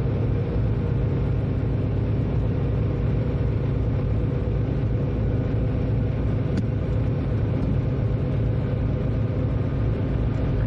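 Train running steadily along the line, heard from the driver's cab: an even, deep rumble of wheels on track with a faint steady hum above it.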